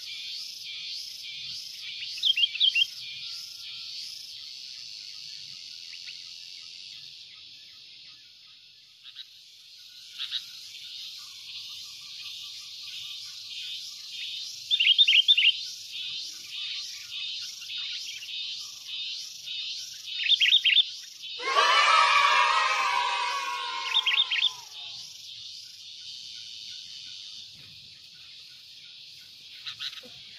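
Sooty-headed bulbuls calling: short clusters of bright chirps every few seconds, and one louder, harsh call with falling pitch lasting about three seconds, about two-thirds of the way through. Behind them a steady, evenly pulsing insect chorus.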